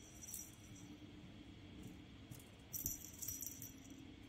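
A cat wand toy being shaken and dragged over carpet, giving short high-pitched rattles: a brief one just after the start and a longer cluster about three seconds in.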